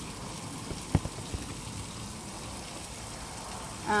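Low, wet crackle of dish-soap foam and water on an acrylic-painted canvas being washed by hand with a sponge, with one light knock about a second in.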